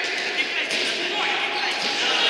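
A futsal ball being kicked and knocking on the wooden floor of an echoing sports hall, with a sharp knock about half a second in, under players' shouts.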